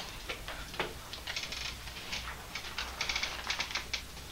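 Chalk on a chalkboard: sharp taps and bursts of fast clicking chatter as it is written with, twice in dense runs.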